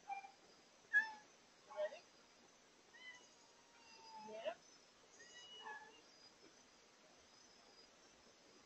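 A domestic cat meowing repeatedly: about five short calls, with a longer drawn-out one in the middle; the call about a second in is the loudest.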